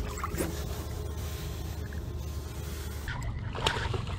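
Light splashing and sloshing of water against the side of a boat as a redfish is released by hand, over a steady low rumble.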